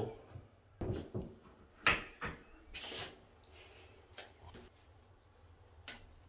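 A few light knocks about one and two seconds in, then a short scrape, as a spirit level is handled and laid along a towel rail held against a plasterboard wall; quieter handling noise follows.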